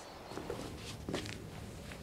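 Quiet room tone with a few faint, short, soft knocks.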